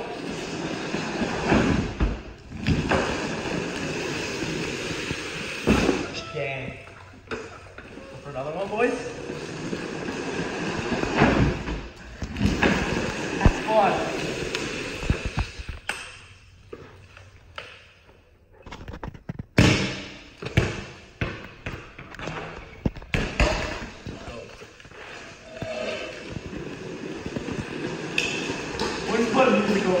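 Hard plastic rear wheels of a drift trike rolling and sliding on a concrete floor, a rough rumble that rises and falls, with several sharp thumps and indistinct voices in an echoing room.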